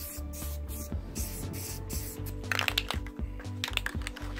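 Background music with a steady beat. Over it, an aerosol spray-paint can hisses in short bursts from about two and a half seconds in until just before the end.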